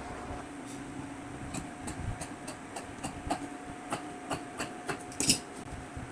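Paper pattern and fabric being handled on a cutting table: light, irregular rustles and taps, with a slightly louder one a little past five seconds in. Under them runs a steady low hum.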